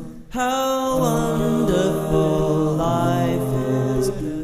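Multitracked a cappella arrangement of one man's voice: several layered parts sing wordless sustained chords in place of instruments. After a brief drop about a quarter second in, the chords move on about once a second.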